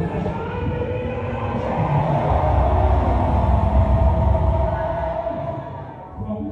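A congregation shouting and praying aloud all at once: a dense, rumbling roar of many voices that swells to its loudest about halfway through and eases off near the end.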